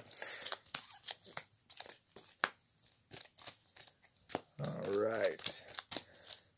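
Foil Pokémon booster-pack wrappers crinkling as sealed packs are handled and laid down one after another, a quick run of short crackles. A voice is heard briefly near the end.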